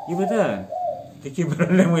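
An older man's voice speaking Javanese in a drawn-out, sing-song way, with a steady high note held under the first second.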